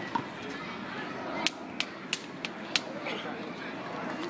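Five sharp clicks or knocks in quick succession, about three a second, in the middle of a faint, steady outdoor background.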